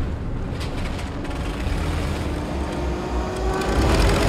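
Film soundtrack of a crashing First World War biplane: its engine drones over a heavy low rumble, the pitch slowly rising through the second half as the plane comes down.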